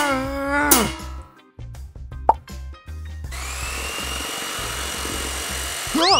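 A long straining groan trails off in the first second over background music. A short rising pop follows, then a steady whirring noise with a thin high whine runs through the last three seconds.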